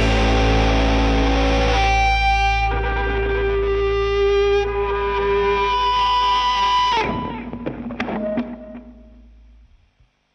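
Blues-rock band holding its final chord: distorted electric guitar notes ringing over a steady bass, which drops away about seven seconds in. A few last hits follow and the ringing dies away to silence near the end.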